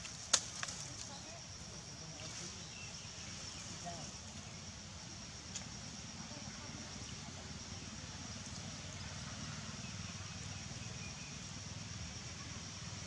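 Outdoor ambience: a steady high-pitched drone over a low rumble, with one sharp click about a third of a second in.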